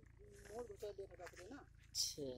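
Faint, distant voices talking, fairly high-pitched.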